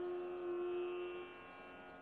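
A steady, sustained drone note with many overtones, fading away about a second and a half in.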